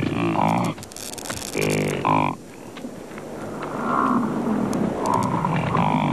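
American bison calling: two short, low calls, one right at the start and one about two seconds in, followed by fainter calling.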